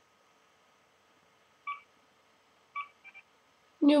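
Mobile phone keypad beeps: four short electronic beeps, one about halfway through, then three near the end, the last two in quick succession.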